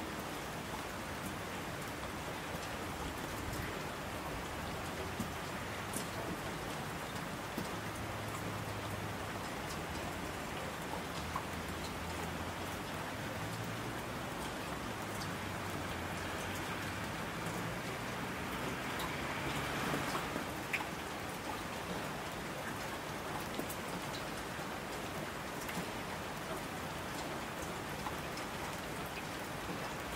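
Steady rain falling, with scattered ticks of single drops. It swells a little about two-thirds of the way through, then settles again.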